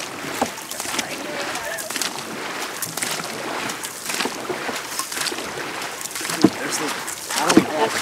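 Dragon boat crew paddling in unison: the paddle blades catch and pull through the water in a steady rhythm of splashes over the wash of water along the hull.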